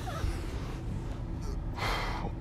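A man's quick intake of breath near the end, over a steady low background rumble.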